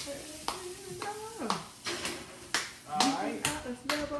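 A voice humming or singing without words over sharp hand claps in a steady beat of about two a second.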